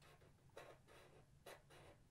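Faint scratching of a black felt-tip marker drawing short strokes on paper, a few separate strokes.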